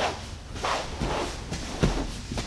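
Two grapplers shifting on a foam mat, with a few soft scuffs of jiu-jitsu gi cloth and bodies sliding over the mat.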